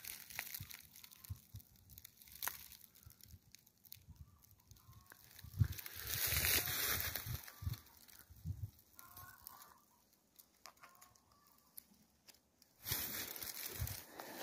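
Dry fallen leaves and pine needles rustling and crunching underfoot in short, irregular bursts, loudest about six seconds in and again near the end.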